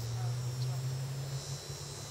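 A low, steady engine drone that fades out about one and a half seconds in, over a steady high-pitched insect chorus.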